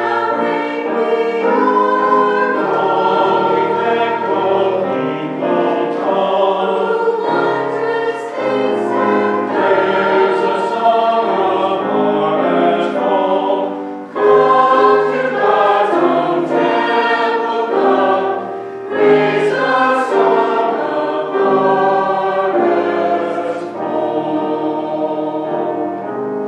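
Mixed choir of men's and women's voices singing together in sustained phrases, with a short break for breath about halfway through.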